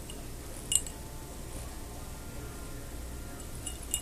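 A glass jar clinking against the rim of a glass simmering pot as lemon pieces and dried herbs are tipped out of it: one sharp, ringing clink about three-quarters of a second in and a fainter one near the end, over a low steady background.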